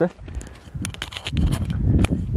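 Footsteps on an earthen forest path, a series of light crunches, with a low rumble of wind buffeting the microphone from about halfway through.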